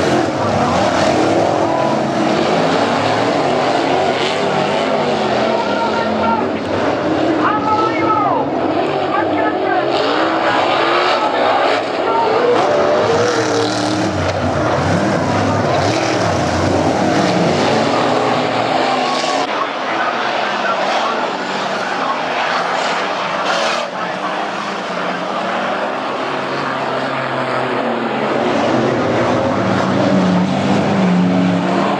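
Speedway race cars on a dirt oval, engines running hard the whole time, their pitch rising and falling as cars pass and back off for the turns.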